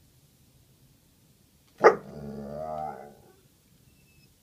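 Pit bull giving one sharp bark about two seconds in, running straight into a drawn-out, wavering vocal sound of about a second.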